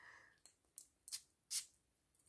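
Perfume bottle's spray atomizer giving three short hissing puffs, the last a little longer.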